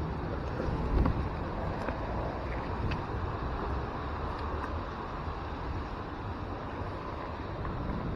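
Wind buffeting the camera microphone as a steady low rumble, with a single thump about a second in.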